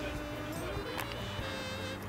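A steady buzzing hum holding one low pitch, with a couple of faint clicks about half a second and a second in.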